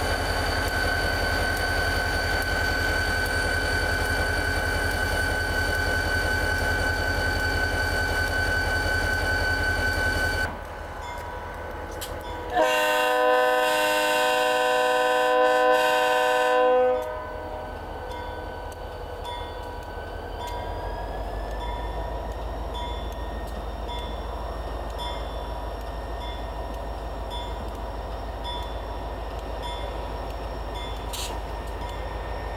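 Conrail diesel locomotive engine running steadily close by, with a steady high tone over it. After a cut, a single locomotive air-horn blast of several notes sounded together holds for about four seconds, then the engine of the locomotive running further off, its pitch rising slightly about halfway along.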